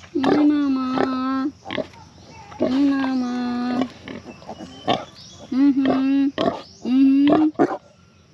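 A person making four long, steady hummed calls, each about a second and held on one pitch, while crooning to a sow close by. Short sharp noises fall between the calls.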